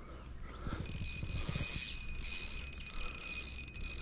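Fishing reel's mechanism ticking rapidly and continuously as line is worked against a large, hard-pulling trout, growing louder about a second in.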